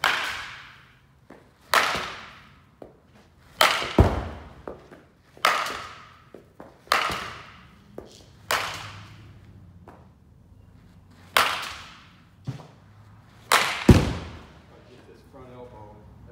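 Baseball bat striking balls again and again in an indoor batting cage: about ten sharp cracks, one every second or two, each trailing off in a long echo from the big hall.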